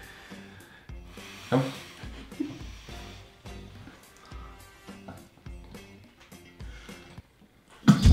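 Quiet background music with held notes and a slow low bass pulse about once a second.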